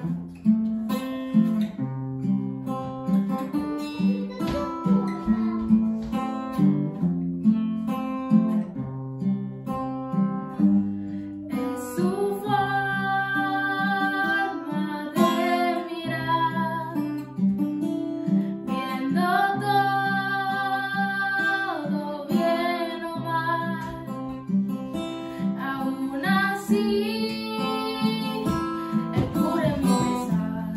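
Steel-string acoustic guitar strummed in a steady rhythm, playing alone at first; about twelve seconds in, a girl's singing voice comes in over it with a Spanish praise song, and the two carry on together.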